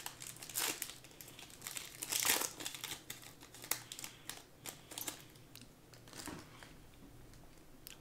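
A foil trading-card pack being torn open and its wrapper crinkled, in irregular bursts with the loudest rip about two seconds in, followed by lighter crinkles and ticks as the wrapper is pulled away from the cards.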